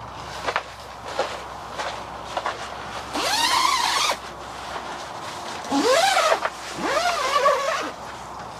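Long zipper on a canvas tent's window panel being pulled open in three strokes, about three, six and seven seconds in, each rising in pitch as the pull speeds up, with light canvas handling clicks before them.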